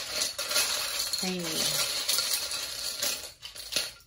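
Small metal charms jingling and clinking together as they are shaken, a dense rattle of many tiny knocks that thins to a few separate clicks near the end.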